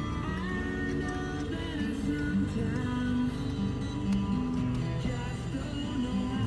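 Music with guitar playing on a car radio inside the cabin.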